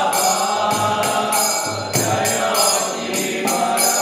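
Devotional kirtan: voices singing a chant together, with hand cymbals striking a steady beat.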